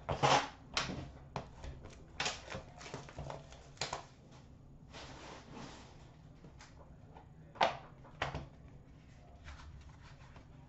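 Upper Deck The Cup hockey card tin and its contents being handled and opened: a run of light clicks, taps and rustles, a brief hiss around the middle, and two sharper knocks a little past the middle.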